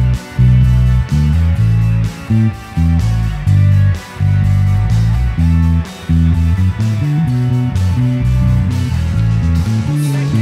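Electric bass guitar played fingerstyle, a line of short, separated low notes that start and stop several times a second, over a rock band's recording with guitars and no singing.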